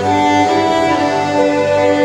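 Violin and flute playing a melody together in a live ensemble performance, over a low, pulsing bass accompaniment.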